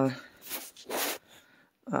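Speech trailing off, then a short breathy rustle about a second in, and a hesitant "uh" right at the end.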